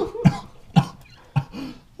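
A man coughing in about three short, sharp bursts, bent over a sink after biting into a raw onion.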